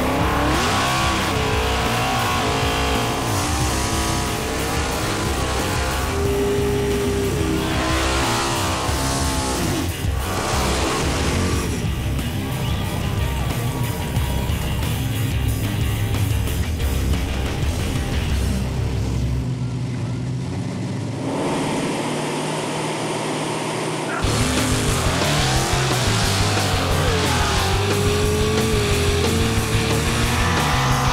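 Small-block V8 drag cars revving and accelerating, the engine pitch repeatedly rising and falling, mixed under a rock music bed.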